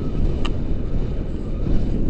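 Wind rushing over an action camera's microphone in tandem paraglider flight: a loud, steady low rumble. A brief click about half a second in.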